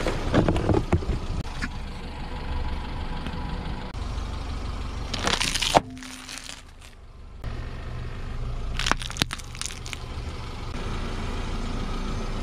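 A car tyre rolls over a cardboard box and crumples it with crackling and creasing, over the car's low steady rumble. About halfway through, a burst of crackling ends in a sharp snap and the sound drops away briefly. Later a few sharp cracks come as the tyre crushes another wrapped item.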